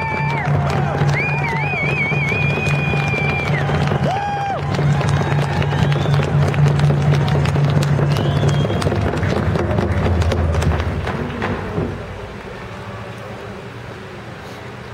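A group of voices chanting in ceremony: long, wavering high-pitched calls in the first few seconds over a low held chant, the whole dying away about twelve seconds in.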